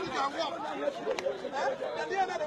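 Several people talking at once in the background, overlapping chatter without clear words.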